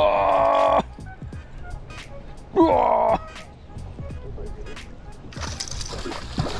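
A man's voice lets out two wordless, held calls, the second sliding down in pitch. Near the end a hooked largemouth bass splashes and thrashes at the water's surface.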